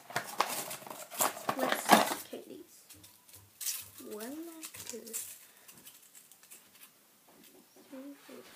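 Hands rummaging through a small box of makeup items: a run of clicks and rattles for the first two and a half seconds, then quieter handling of a bundle of nail files. A short murmured voice comes about four and five seconds in.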